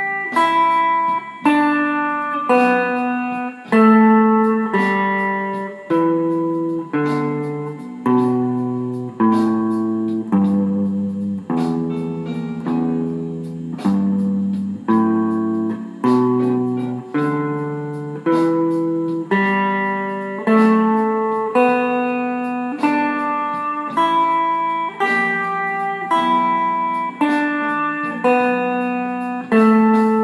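Fender electric guitar playing the E minor pentatonic scale in open position as single plucked notes, a little more than one a second, each left to ring and fade. The notes step up and down the scale, reaching the low open E string in the middle before climbing again.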